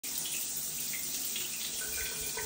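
Water running steadily from a shower, a continuous even hiss.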